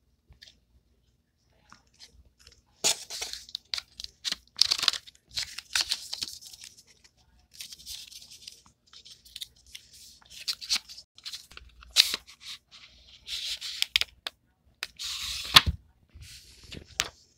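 Cardboard packaging of an eyeshadow palette and its paper card being handled and opened by hand: irregular rustling, scraping and crinkling from about three seconds in, with a couple of sharp clicks, one about twelve seconds in and one near the end.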